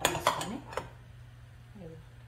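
A steel spoon clinking against a stainless steel plate and pot: a quick cluster of clinks at the start and one more about three-quarters of a second in.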